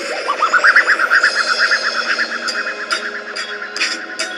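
Electronic music with a warbling sound effect: a rapidly pulsing tone, about seven pulses a second, rises in pitch over the first second, then holds and fades out.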